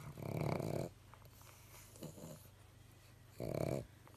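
Pug snoring: two loud, rattling snores, one at the start and one near the end, with a fainter one between.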